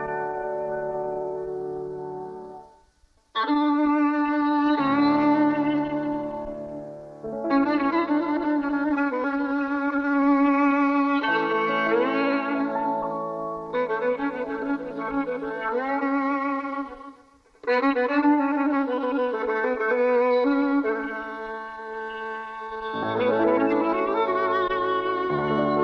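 Violin playing a slow, unaccompanied passage in the Persian dastgah Mahour: long held notes with sliding ornaments, in phrases broken by short silences about three and seventeen seconds in.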